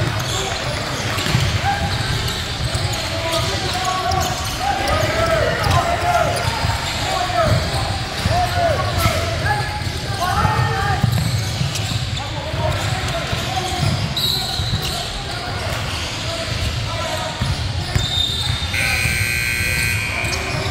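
Basketball being dribbled on a hardwood gym floor during a game, with indistinct shouts and chatter from players and spectators echoing in a large hall. A brief high steady tone sounds about a second and a half before the end.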